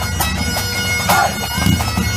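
Bagpipes playing a tune over their steady drones. A voice shouts "No!" and laughs a little past the middle.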